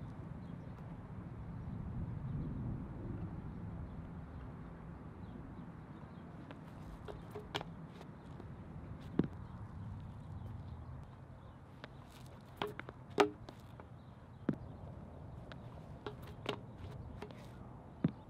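Shot putter's shoes scuffing and tapping on a concrete throwing circle during a half-turn practice throw: a handful of sharp clicks and taps, mostly in the second half and loudest about 13 seconds in, over a steady low outdoor rumble.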